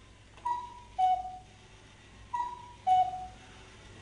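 Cuckoo clock calling "cu-ckoo", a higher note falling to a lower one, three times about two seconds apart, marking midnight.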